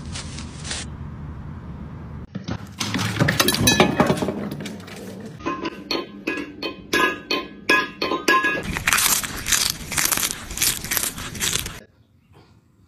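A metal pet bowl clanging and clinking on a hard floor as a cat paws and tips it: a quick series of strikes, each ringing on at the same metallic pitches. Before it there is a louder noisy clatter, and after it a dense run of rattling strokes.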